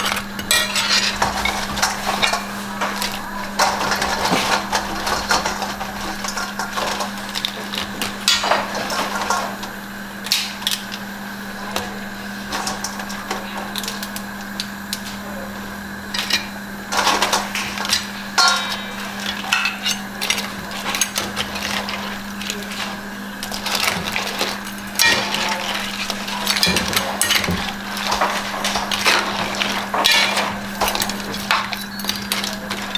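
Metal ladle clinking and scraping in a large metal pot of crab curry, with crab shells knocking against the pot and a steel bowl. Irregular clatters come throughout over a steady low hum.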